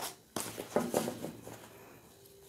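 Tarot cards being gathered off a cloth-covered table and handled in the hands: a soft tap about a third of a second in, then light rustling that fades away.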